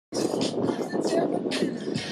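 Indistinct voices over steady outdoor background noise.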